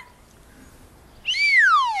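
A slide whistle playing one glide: a short upward swoop, then a long downward slide in pitch, starting a little over a second in.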